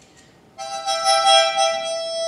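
Harmonica blown in one steady held chord, starting about half a second in and lasting about a second and a half.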